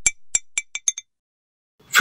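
A glass marble dropped, clinking about six times in quick succession, the strikes coming closer together as it bounces and settles.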